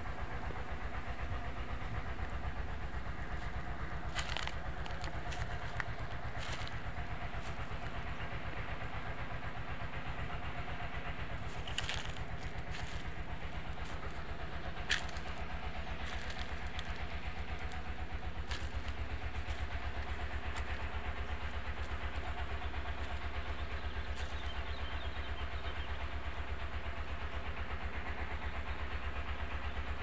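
Single-cylinder dompeng diesel water-pump engines running steadily somewhere off in the fields, a low drone with a rapid, even beat, pumping water to irrigate rice paddies in the dry season. A few faint, sharp snaps of dry bamboo litter are heard now and then.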